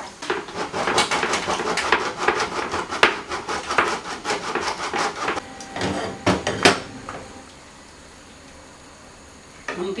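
Wooden spoon stirring and scraping minced meat in a sizzling frying pan: a quick run of scrapes and taps for about five seconds, then a few sharp knocks against the pan, after which it goes quieter.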